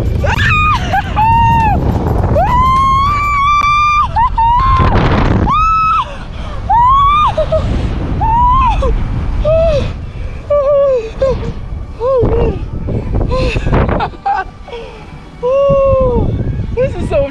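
A woman screaming and shrieking in a string of long, high-pitched cries while sliding down a snow tubing hill on an inner tube, over a heavy low rumble of wind rushing on the microphone.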